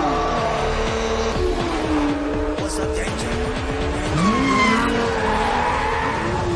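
Soundtrack of a TV street-race scene: sports-car engines running hard and tires squealing over a music score, with an engine revving up about four seconds in.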